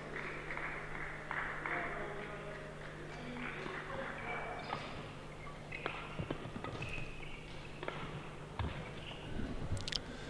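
Badminton rally: sharp racket strikes on the shuttlecock and players' footsteps on the court, coming more often in the second half, over a steady low hum.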